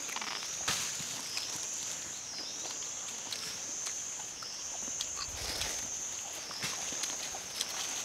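Insects buzzing in a steady high chorus that dips about every two seconds, with scattered light clicks and rustles of spoons, bowls and a plastic bag as people eat.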